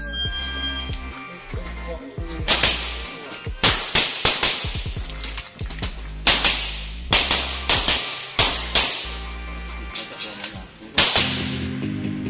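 A short electronic shot-timer beep, then a string of pistol shots fired in uneven bursts as the shooter moves through a practical-shooting stage, with the loudest shots about two and a half seconds in and the last about eleven seconds in. Background music plays under the shots.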